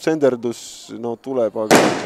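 Male match commentary, broken near the end by a sudden sharp bang, louder than the voice, that dies away within a fraction of a second.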